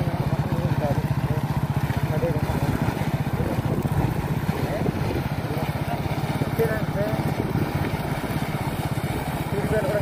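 Small motorcycle engine running steadily at low speed, with an even pulsing throb.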